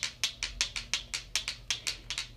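Rocks tapped together, a quick run of sharp clicks, about seven a second and slightly uneven.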